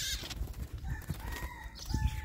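A bird calling faintly in a few short pitched phrases from about a second in, over an uneven low rumble of wind and handling on the microphone.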